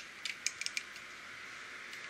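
A few sharp metallic clicks in the first second as zipline carabiners and the trolley are clipped onto the steel cable, then faint steady background noise.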